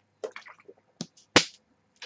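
A person drinking from a plastic water bottle: a string of short swallowing clicks and gulps, the sharpest about a second and a half in.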